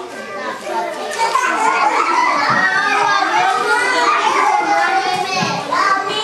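A group of young children talking and calling out all at once, a dense babble of overlapping voices that gets louder about a second in.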